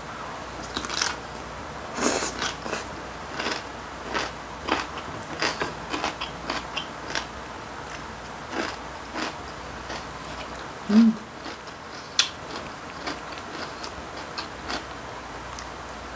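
A person biting and chewing crisp young-radish kimchi (chonggak kimchi) close to the microphone: a string of sharp crunches and wet chewing sounds, with a short hummed "mm" about eleven seconds in.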